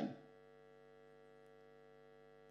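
Near silence: the last word fades out right at the start, leaving a faint, steady electrical hum.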